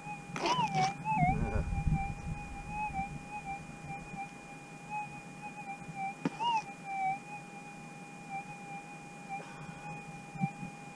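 A gold-prospecting metal detector holds a steady threshold hum, which warbles up in pitch briefly about half a second in and again around six seconds: the detector responding as soil holding a small target is passed over the coil. Scraping of soil and a scoop goes with the first response, and there is a sharp click shortly before the second.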